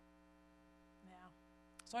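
Steady electrical mains hum from the microphone and sound system, with a soft spoken "yeah" about a second in and speech starting near the end.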